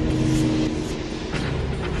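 Low, steady background drone of a documentary score, made of held low notes; a higher held note fades out in the first second.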